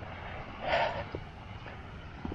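Low, uneven rumble of wind on the microphone, with one brief hiss about three-quarters of a second in.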